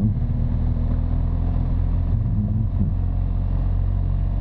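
BMW R1200GS Adventure's boxer-twin engine running steadily at low city speed, a low, even drone.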